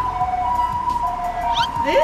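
Electronic two-tone sound from a claw machine: a steady high tone with a lower tone pulsing on and off beneath it, siren-like. A short rising voice comes near the end.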